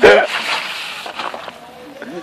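Petrol splashed from a can onto a burning cardboard fire, flaring up with a sudden loud whoosh that dies away over about a second and a half.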